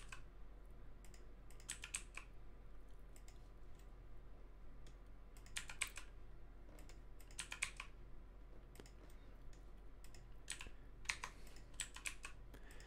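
Computer keyboard keys tapped in short bursts of clicks every second or two, the G and Y keys pressed over and over to nudge vertices along one axis in Blender. A faint steady low hum lies under the clicks.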